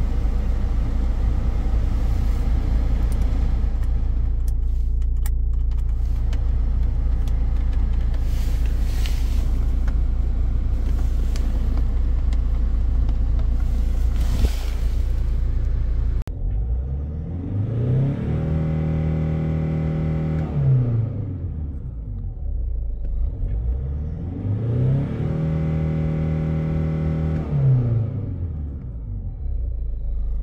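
Hyundai Santa Fe engine revved twice from idle, heard inside the cabin: each time the pitch climbs, holds for about two seconds and drops back, the second rev a few seconds after the first. Before the revs, a steady rushing noise over a low hum while the climate-control blower is set to high.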